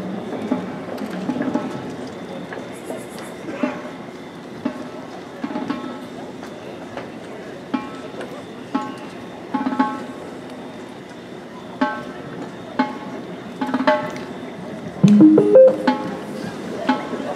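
Marching band percussion sounding sparse, separate strikes about once a second, several of them short pitched notes, over a murmur of voices. A louder rising sound comes near the end.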